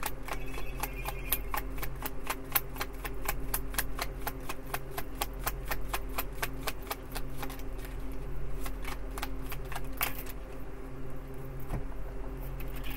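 Tarot cards being shuffled by hand: a rapid run of crisp card clicks, several a second, which thins out after about ten seconds. A steady low hum lies underneath.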